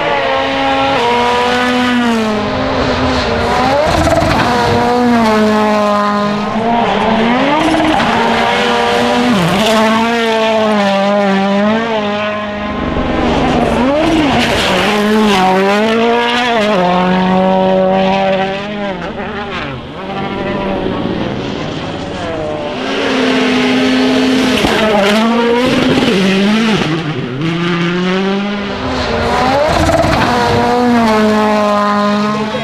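Toyota Yaris WRC rally cars' turbocharged 1.6-litre four-cylinder engines at full throttle as they pass one after another, the pitch climbing and dropping sharply with each gear change and lift.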